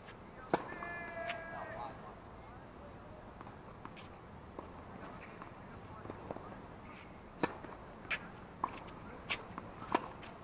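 Tennis serve struck by a racket about half a second in, followed by a brief voice call, then a rally of sharp racket hits and ball bounces on a hard court, the hits coming faster and sharper over the last few seconds.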